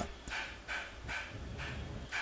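A person's short breathy gasps, about two a second, fairly quiet.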